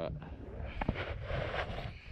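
Low rumble of light wind on the camera microphone on the water, with one short sharp click just under a second in.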